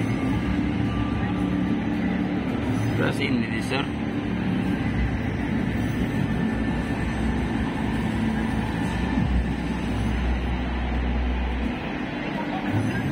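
Busy indoor crowd ambience: many people talking at once with background music, and a low rumble during the last few seconds.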